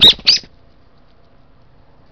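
Brown-eared bulbul giving two loud calls in quick succession, about a third of a second apart, right at the start.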